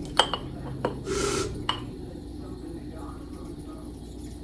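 A few sharp clinks of an aerosol can against a glass mason-jar mug. About a second in comes a short hiss as the Reddi-wip whipped-cream can sprays into the glass.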